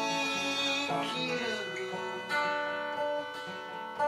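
Steel-string acoustic guitar playing chords, with a harmonica holding long notes over them.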